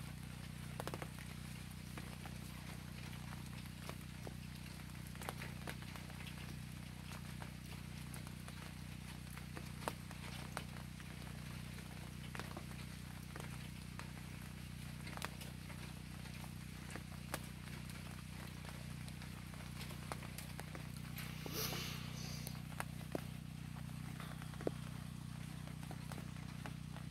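Light rain outdoors: scattered drips and taps over a steady low hum, with one brief hiss about three-quarters of the way through.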